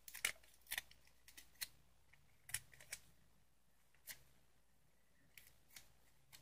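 A strip of adhesive tape handled and dabbed on the skin to lift glitter fallout: about a dozen small, sharp, irregular crackles and clicks, otherwise quiet.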